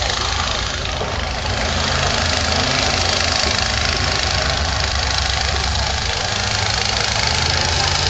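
1995 Jeep Grand Cherokee's engine running steadily as it drives the dirt obstacle course, under a steady noisy background.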